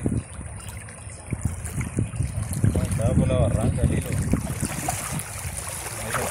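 Wind rumbling on the microphone over small waves lapping at the riverbank, with scattered light splashes. A voice speaks briefly about three seconds in.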